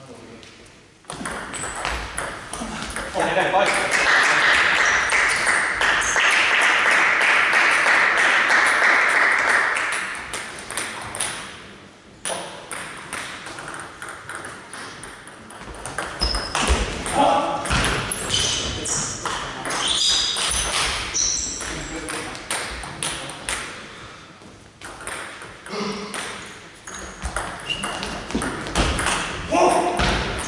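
A table tennis ball clicking off the bats and the table through serves and rallies in a large hall. Voices are loudest for several seconds early on.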